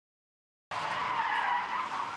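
Car tyres squealing in a skid, starting suddenly about two-thirds of a second in and holding steady.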